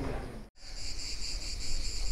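Insects singing in a steady, rapidly pulsing high chorus, which comes in after a brief cut to silence about half a second in.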